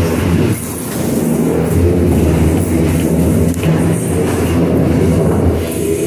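A roomful of people reciting the Four-Way Test aloud in unison, many voices overlapping into a loud, steady chorus of speech with short pauses between the lines.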